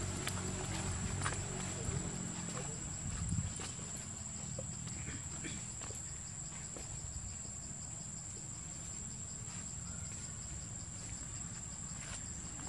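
Insects droning steadily at a high, even pitch with a fast pulsing beneath it. Under them runs a low rumble, stronger in the first few seconds, and there are a few soft ticks.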